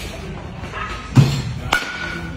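A sharp thud about a second in, then a baseball bat striking a pitched ball, with a short ringing ping after the hit.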